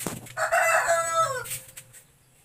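A rooster crowing once: a loud call of a little over a second that drops in pitch at its end, preceded by a brief click.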